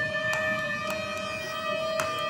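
A sustained drone note from the trailer's score: one steady held tone with overtones, with a few faint ticks.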